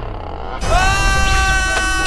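A long, high-pitched vocal cry held on one flat pitch for about a second and a half, starting a little over half a second in: a cry of pain, from a splinter.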